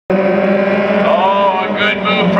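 Midget race car engines running at a steady pitch as the cars circle the oval, with a man's voice coming in over them about a second in.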